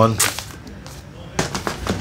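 Boxing gloves of synthetic leather handled on a table: a few sharp knocks and rustles, the loudest about one and a half seconds in.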